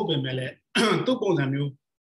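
A man's voice speaking in two short stretches, each cut off abruptly into dead silence, the way a call's audio gate cuts out between phrases.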